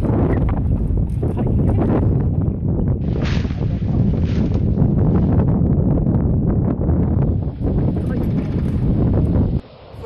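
Wind buffeting the microphone of a camera carried on a moving bicycle, a loud rumble that cuts off suddenly near the end.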